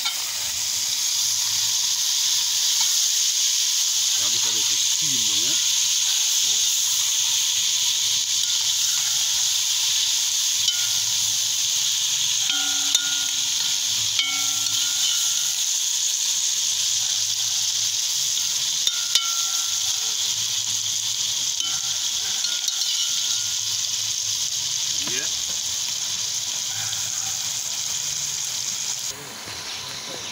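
Sliced onion, sweet peppers and scallion frying in a little oil in a metal pot over a wood fire: a steady sizzle that cuts off suddenly near the end.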